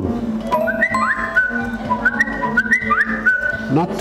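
A person whistling a short tune in held notes that step and slide between a few pitches, with light computer-keyboard clicks as a word is typed.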